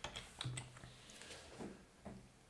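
Faint computer keyboard keystrokes: a few scattered key clicks.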